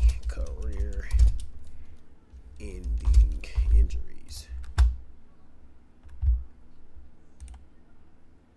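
Typing on a computer keyboard, in quick runs of keystrokes, then a few single key taps in the second half.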